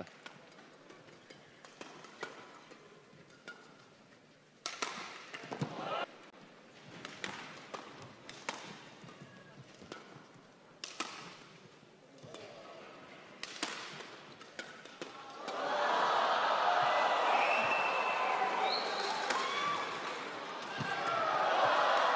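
Badminton rally: racket strikes on the shuttlecock and footwork on the court, single sharp hits a second or so apart. From about two thirds in, a crowd cheers loudly as the rally ends.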